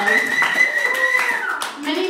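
Small audience clapping, with one voice holding a long, high 'woo' over it that drops away about a second and a half in.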